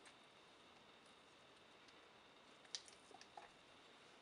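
Near silence with a faint steady hiss, broken about two-thirds of the way through by one sharp click and a few faint ticks: a spatula knocking against a plastic pitcher of soap batter.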